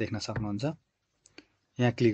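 A man's voice speaks, then breaks off. In the pause a computer mouse button clicks, two short ticks close together a little past one second in, and the voice resumes just before the end.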